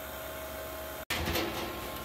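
Oil-type vacuum pump of a Harvest Right freeze dryer running steadily, pulling the chamber down during an off-gassing run. About a second in, the sound cuts out for an instant, followed by a short burst of noise before the steady running resumes.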